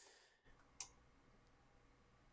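Near silence, broken once by a single short click a little under a second in.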